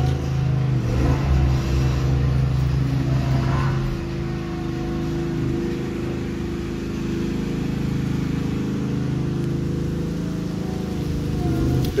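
Engine of a small construction machine running steadily at the end of the driveway, a low constant hum that eases a little about four seconds in.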